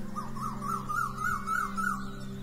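A repeated high whistled note sweeping up and down about three times a second, creeping a little higher in pitch, over steady background music.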